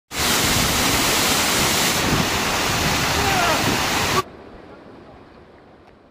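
Waterfall pouring close to the microphone, a loud steady rush of water with a person's voice faint beneath it. It cuts off suddenly about four seconds in, leaving only a faint fading sound.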